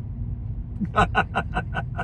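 Steady low road rumble inside a moving car, with a man laughing in short, evenly spaced chuckles, about five a second, starting about a second in.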